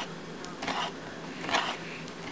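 Condor Nessmuk carbon-steel bushcraft knife slicing through raw chicken breast on a wooden cutting board: two faint, short cutting strokes, about half a second in and again about a second and a half in.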